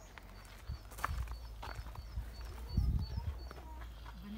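Footsteps with wind rumbling on the microphone while walking outdoors, with a louder thump about three seconds in. Behind them a small bird repeats a faint short high call about three times a second.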